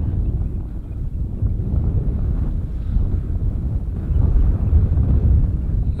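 Wind buffeting the microphone, a low uneven rumble.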